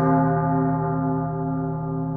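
A single long bell-like ringing tone in horror-story sound design, held steadily and slowly fading, with a slight pulsing.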